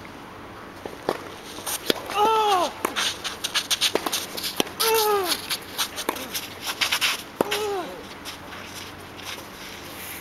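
A tennis rally: several sharp pops of the ball coming off the racket strings, a second or so apart, with shoe scuffs on the hard court. Three short cries that rise then fall, the loudest sounds here, fall close to the strokes, like players grunting as they hit.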